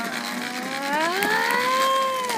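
A child's voice making one long siren-like "woo" sound effect, sliding up in pitch and then holding.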